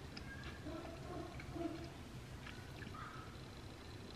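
A dog barking faintly, a few short barks about a second in, then a couple more softer ones later.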